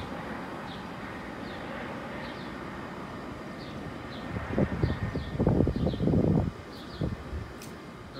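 CRJ700-series regional jet on landing approach, its turbofans making a steady rushing noise. About halfway through comes a louder, irregular rumble lasting about two seconds.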